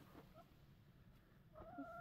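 Near silence, with a faint, steady chicken call starting about one and a half seconds in.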